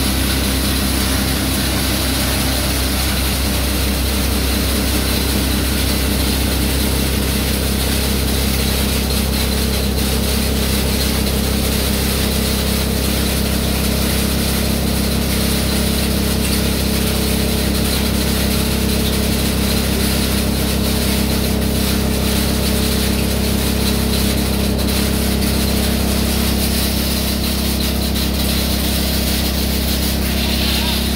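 Electric-motor-driven combined hammer mill and disk mill running steadily while grinding charcoal into powder: a constant low hum under a rough, even grinding noise, a little more uneven in the first several seconds.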